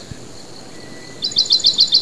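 A songbird singing a quick series of about seven short, high chirps that begins a little past halfway, over a faint steady hiss.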